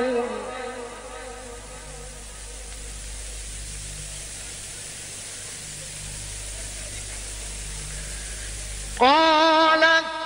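Steady hiss and a low hum from an old recording fill a pause in a chanted Quran recitation; a male reciter's voice trails off just after the start. About nine seconds in he begins a new phrase on a loud, rising, then held note.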